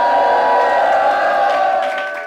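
Several voices holding a long, drawn-out shout of 'amen' together, fading away near the end.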